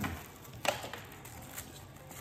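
Small clicks and light handling noises from the parts of a bike handlebar phone mount being fitted and adjusted by hand, with one sharp click about a third of the way in.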